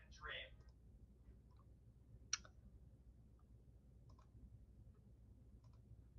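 Near silence: room tone through a call microphone, with a short voice fragment at the very start, one sharp click about two seconds in and a few faint clicks near the end, the clicks of a computer mouse.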